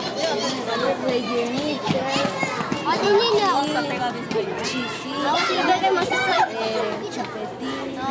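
Children's voices talking over one another in a lively, continuous babble.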